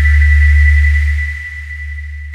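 Ambient synthesizer preset 'Distant Memory' in UVI Falcon 3, played from a keyboard: a deep sustained bass drone under a few high held tones, getting somewhat quieter in the second half.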